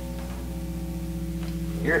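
A steady buzzing tone from a guitar amplifier rig running through a DOD FX-90 analog delay pedal: several pitches held at an even level with a fast low pulsing underneath.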